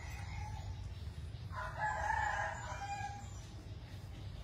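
A rooster crowing once, a single crow of about a second and a half starting about a second and a half in, over a steady low rumble.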